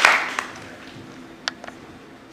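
Audience applause dying away within the first half second, leaving a quiet hall with a couple of sharp isolated taps about a second and a half in.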